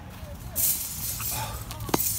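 Rustling and handling noise as an iguana is put into a wire-mesh pen on grass, with one sharp knock near the end.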